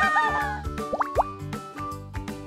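Upbeat background music with a steady beat, with two quick rising 'bloop' sound effects about a second in, one right after the other.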